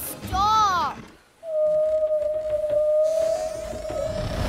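A cartoon whale's voice singing: a short rising-and-falling call, then after a brief pause one long steady held note.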